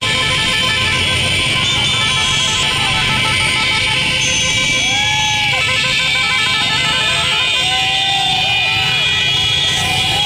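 A dense crowd of motorcycles riding slowly, engines running with horns hooting, under shouting voices that rise in short calls about halfway through and again near the end.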